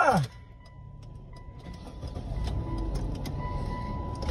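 Low rumble of a car heard from inside the cabin, growing louder as the car gets moving. A steady high-pitched tone joins about a second in.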